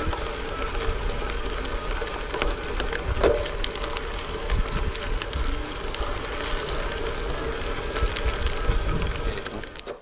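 Bicycle tyres rolling over a gravel track: a steady crunching hiss with scattered small clicks of stones, and a low wind rumble on the microphone.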